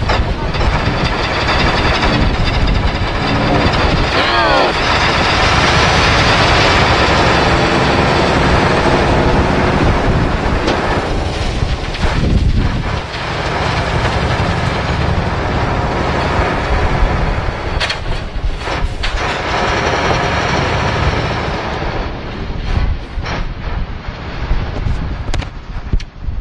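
Truck departure sound effect: a heavy truck engine running loud, its pitch rising about four seconds in as it revs and pulls away, then holding steady. A few sharp clicks come near the end.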